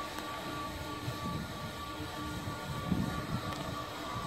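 Steady indoor room hum with a faint constant tone and no distinct event.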